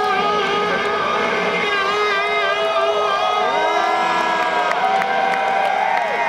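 Stratocaster-style electric guitar playing live through stage amplifiers, with held notes that waver and bend, over a crowd cheering and whooping.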